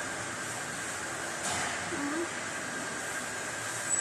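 Steady background hiss, with a short tearing, rustling sound about a second and a half in as pomelo flesh is pulled from the fruit's thick peel, followed at once by a faint, brief vocal sound.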